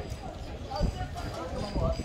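Indistinct voices of people talking in the background, with a few dull low thumps, the clearest a little under a second in and near the end.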